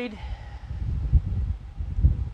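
Low, uneven rumbling with a few dull bumps: handling noise on the microphone as the camera and the blade are moved about.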